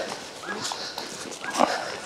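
A dog whining briefly a couple of times while dogs rustle through dry grass and fallen leaves.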